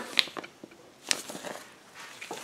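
Clear plastic packaging bags crinkling and rustling as bagged hand tools are handled, with two sharper clicks, about a quarter second and about a second in.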